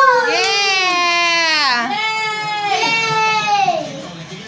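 A young child crying in three long, high-pitched wails: the first drawn out and slowly falling in pitch, the last trailing off downward near the end.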